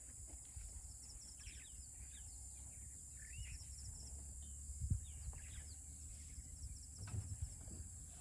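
Faint, scattered bird chirps over a steady high-pitched insect buzz and a low rumble in the background, with one soft thump about five seconds in.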